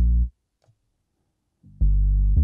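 Synthesizer dub bass loop playing deep, sustained notes through the BassLane Pro stereo-bass plugin with its compressor engaged. A note cuts off shortly after the start, and the bass comes back in near the end after a gap of near silence of about a second and a half.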